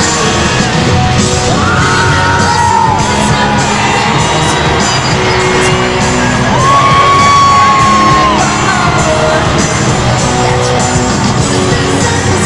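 Live pop band music played loud in an arena, with a singer holding two long notes, the longer one about seven seconds in.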